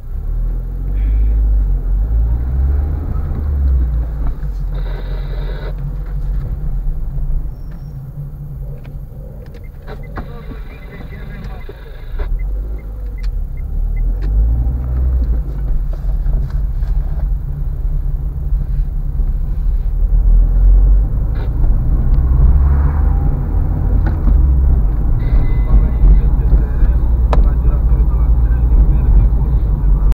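Low rumble of a car's engine and tyres heard from inside the cabin while driving, growing louder in the second half.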